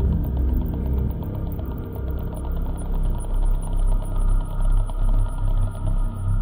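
IDM electronic music: a gritty, engine-like low rumble that gives way about halfway through to a regular pulsing bass, with a faint high ticking pattern above.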